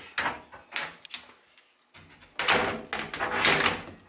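A few knocks and clicks, then a sliding closet door rolling along its track for about a second and a half.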